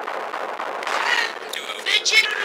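A distorted, sped-up cartoon character voice over a dense crackly noise. Short pitched voice fragments break through about a second in and again near the end.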